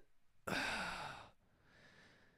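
A man sighs: one breathy exhale about half a second in, lasting under a second, then a fainter breath near the end.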